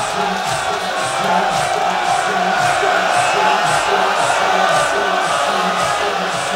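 A crowd of men mourners beating their chests in unison (sineh-zani), about two slaps a second in a steady rhythm, with the crowd's voices chanting along.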